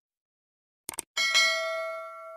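Sound effects of an animated subscribe button: a quick double mouse click about a second in, then a notification bell ding that rings on and slowly fades.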